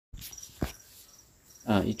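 Faint, high-pitched insect chirps, short and repeating in pairs a few times a second, with a single sharp knock about half a second in. A man begins speaking near the end.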